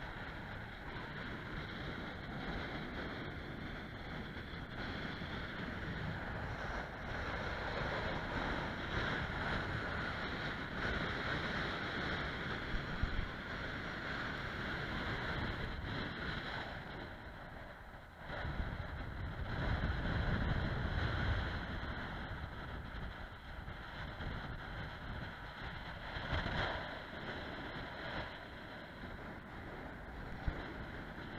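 Wind rushing over the camera microphone, with a stronger low gust about two-thirds of the way through.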